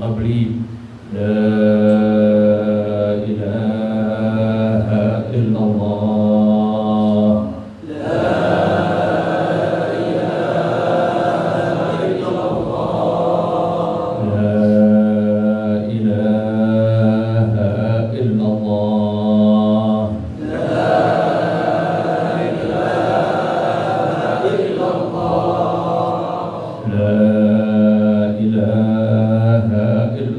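A group of men chanting an Arabic religious recitation together in unison, in long held phrases separated by brief pauses.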